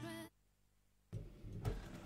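The tail of a song cuts off abruptly, leaving a moment of dead silence, then faint studio room noise with a soft knock.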